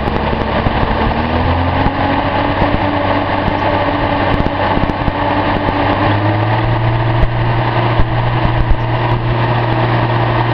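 Datsun L28 straight-six fuel-injected engine running, its speed raised slowly on the throttle, the pitch rising in steps about a second in and again around five to six seconds in.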